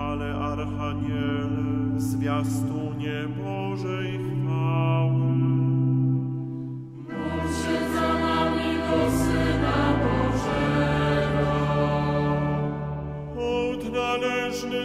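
Choir chanting a Polish Catholic chaplet in sustained chords over steady low notes, with a short break about halfway before the next phrase begins.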